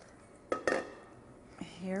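Two quick clinks, about a fifth of a second apart, of a utensil and a metal mixing bowl as the kugel mixture is emptied out of it into a glass baking dish.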